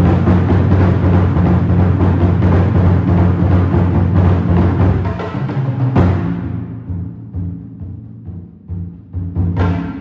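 Taiko drums, a large flat-bodied hira-dō daiko and a taiko set, played together in dense, fast improvised drumming with deep booming tones. About six seconds in a heavy stroke lands, after which the playing thins out to sparser strokes that ring out between hits, picking up again near the end.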